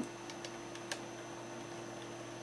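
Steady low electrical hum, with three faint short ticks in the first second.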